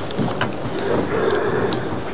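Trouser fabric rustling on an ironing board as it is smoothed flat by hand, with a couple of light knocks as the steam iron is handled early on.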